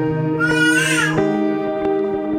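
Bright plucked-string music, ukulele-like, with a steady beat. A baby cries once over it, a single rising-then-falling wail, about half a second in.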